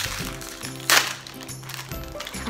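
Background music with steady held notes. About a second in comes one sharp crackle, a plastic snack wrapper being torn open.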